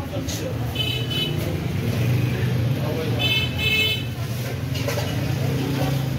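Road traffic with a steady low engine rumble, and a high-pitched vehicle horn honking about a second in and again, in two short blasts, around three and a half seconds in.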